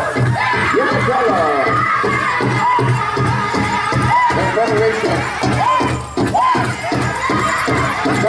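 Powwow drum group singing over a steady unison drumbeat, the high voices gliding up and down in long rising-and-falling phrases.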